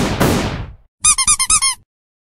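Cartoon sound effects: two sudden noisy hits that fade away over about half a second, then about a second in a quick run of about six high squeaks, each rising and falling in pitch.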